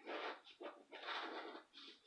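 Scratch-off lottery ticket being scratched with a hand-held scraper: about four short scraping strokes, the longest about a second in.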